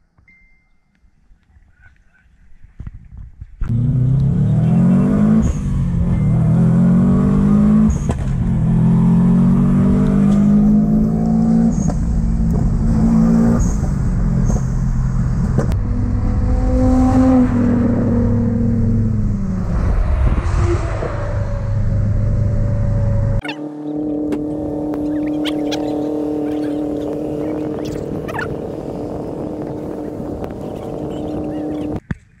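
Car engine accelerating and revving hard, its pitch climbing and dropping again and again as it pulls through the gears. It starts loud a few seconds in and cuts off abruptly at about 23 seconds, giving way to steady held tones.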